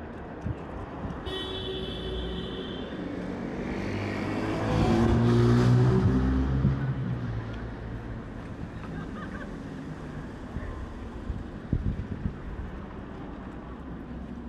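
A motor vehicle passing on the street over steady traffic hum: its engine note swells to its loudest about five seconds in, dips slightly in pitch as it goes by, and fades away.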